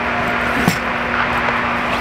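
A bat knocks once, dully, as it is pushed down into a roller bag's bat sleeve, about two-thirds of a second in, over a steady ventilation hum with a low tone.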